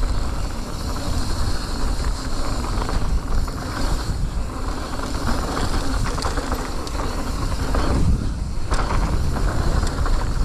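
Full-suspension mountain bike (Calibre Triple B) ridden fast down a dry dirt trail: knobbly tyres rolling on the dirt and heavy wind buffeting on the microphone, with scattered clicks and rattles from the bike over the bumps.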